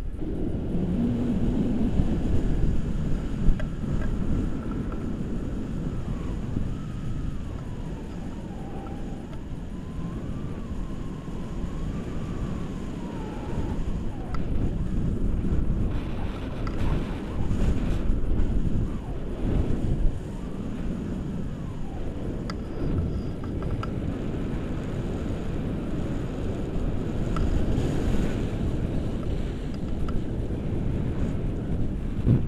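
Wind rushing over the camera microphone in flight under a tandem paraglider: a low, gusty buffeting that swells and eases.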